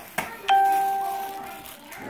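A single doorbell chime rings about half a second in and fades away over a second or so. Just before it there is a sharp tap, an egg being knocked against the mixing bowl.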